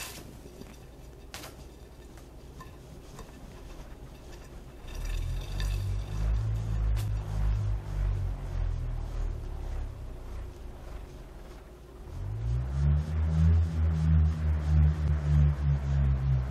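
A carved Australian Aboriginal bullroarer whirled overhead on its cord, giving a low, pulsing hum that swells and wavers with each turn. It starts about five seconds in, fades at around ten seconds, and comes back louder at about twelve seconds, rising briefly in pitch as it speeds up.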